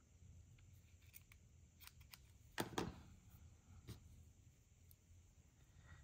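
Near silence: faint handling noise as a strip of cheesecloth is cut with scissors, with a couple of soft clicks a little before the middle.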